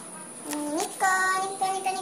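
A high voice singing: a short note that slides upward, then one long held note from about a second in.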